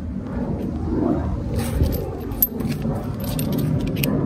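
Low wind-and-handling rumble on the microphone, with light metallic clinks and rattles through the second half as the propane hose's brass quick-connect fitting is handled.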